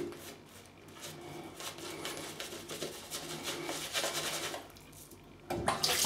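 Shaving brush scrubbing soap lather around the face: soft, irregular wet rubbing and swishing strokes. Near the end a tap starts running.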